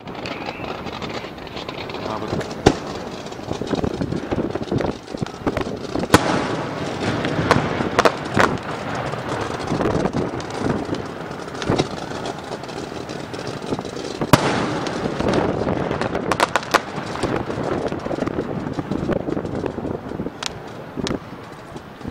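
Fireworks display firing: a continuous hissing crackle broken by irregular sharp bangs, the loudest about 6 and 14 seconds in, thinning out near the end.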